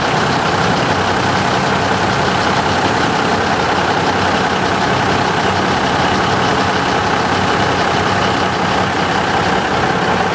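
Engine of a full-size SUV running steadily at low speed as it crawls through deep mud, with no revving.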